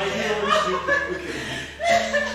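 Playful chuckling and giggling laughter, in short bursts, with a louder burst near the end.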